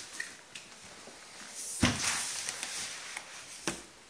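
Large cardboard retail box being turned over by hand and set down on a table: faint rustling and sliding, one sharp knock a little under two seconds in, and a lighter tap near the end.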